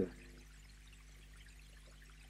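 A pause in speech: faint room tone with a low steady hum.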